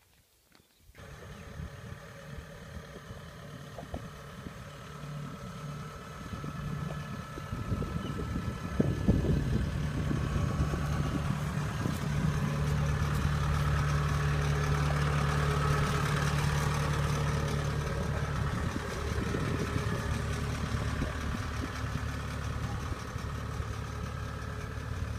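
Diesel engine of a Kubota DC-70 tracked combine harvester running. It comes in about a second in, grows louder over the next several seconds, then holds steady.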